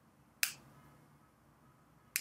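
A single short, sharp click about half a second in, over faint room tone.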